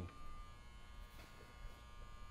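Faint room tone: a steady low hum with a thin electrical buzz.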